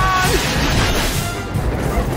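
Film score music over sound effects of a sleigh speeding across snow, with rushing and crashing noise.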